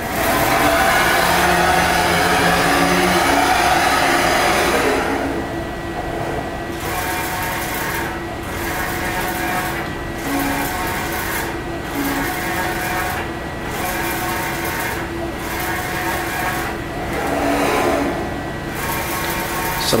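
Spyder II direct-to-screen inkjet imager running a bi-directional print. For about the first five seconds a motor drives the freshly loaded screen into position. Then the print-head carriage shuttles back and forth across the screen, with a short dip in the sound at each reversal about every 1.7 seconds.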